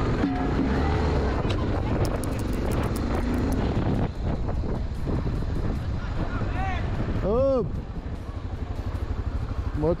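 Motorcycle engine running as the bike is ridden, a steady low rumble. About seven and a half seconds in there is a short rise and fall in pitch.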